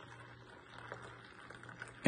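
Coffee pouring in a thin steady stream from one paper cup into another, a faint trickle of liquid into liquid.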